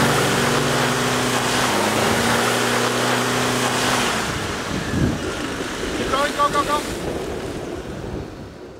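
A Troller 4x4's engine working hard with its tyres spinning and churning in deep mud, over a loud, steady rush of noise: the vehicle is stuck and being towed out with a strap. The engine note holds steady for about four seconds, then falls away.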